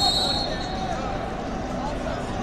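Wrestling-arena ambience: short repeated squeaks of wrestling shoes on the mats over a background of voices, with a high whistle tone at the start that fades out over about a second and a half.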